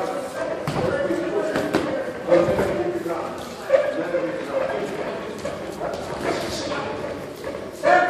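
Sparring in a boxing ring: thuds of gloved punches and footwork on the ring canvas, with sharp impacts about two and four seconds in, under voices in the gym.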